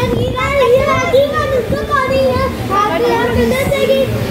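A toddler's high-pitched voice babbling and chattering without a break, over the background noise of a busy room.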